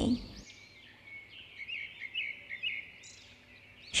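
Faint birds chirping in the background, a run of short chirps in the middle.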